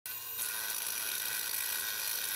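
Handheld angle grinder grinding a steel rail: a steady high-pitched whine.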